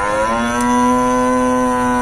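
Cattle mooing: one long moo held at a steady pitch.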